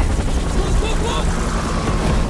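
Action-film soundtrack: a helicopter's rotor and engine in a dense, steady low rumble, with a few faint voice fragments about a second in.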